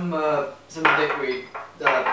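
Crockery and glasses being handled at a kitchen sink: a few sharp clinks and knocks of ceramic and glass, each with a short ringing tone.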